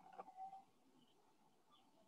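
Near silence: faint room tone, with a brief faint sound in the first half second.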